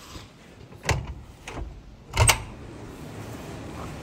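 A glass balcony door being opened, with two sharp clacks of its frame and latch about a second and a half apart, the second louder.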